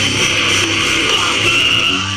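Live rock band playing loud, heavy music with distorted electric guitars, heard from the audience.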